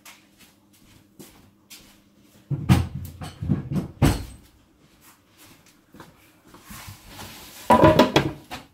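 Stacked MDF boards and a wooden bench top being lifted and set down, knocking and clattering against the bench: a cluster of wooden knocks about three seconds in, and another near the end.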